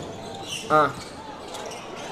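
A basketball being dribbled on a hardwood gym court, heard over the background noise of the gym. A brief pitched squeal comes about three-quarters of a second in.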